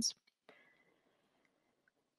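The last syllable of a woman's speech ends right at the start, then near silence with only faint room tone.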